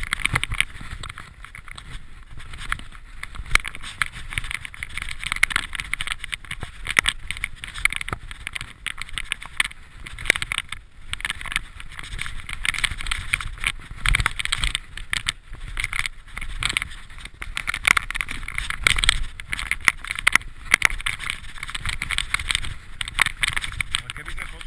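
Mountain bike descending a rocky dirt trail: a continuous rumble and hiss of tyres over dirt and stones, with frequent sharp knocks and rattles as the bike hits rocks.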